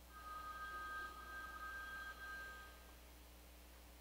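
Meditation bell ringing once: two clear, steady tones that fade out over about three seconds.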